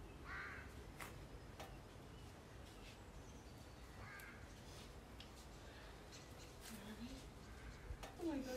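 Two faint bird calls about four seconds apart, with a few light clicks between them.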